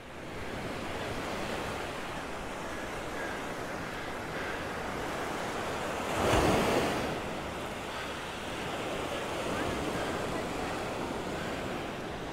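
Surf washing onto a sandy beach, with wind on the microphone; one wave breaks louder about halfway through.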